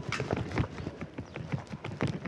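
Footsteps on a concrete car-park floor: a quick, irregular run of short taps and scuffs as people walk.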